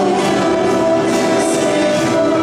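A church hymn: voices singing long held notes with instrumental accompaniment.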